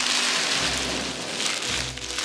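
Foam packing peanuts rustling and cellophane wrap crinkling as a hand digs through a cardboard box and lifts out a wrapped item, a dense steady rustle.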